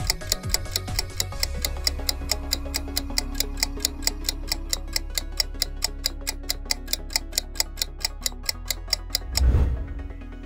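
Quiz countdown-timer sound effect: rapid, even clock ticking, about five ticks a second, over a steady background music bed. The ticking stops with a brief loud swell near the end.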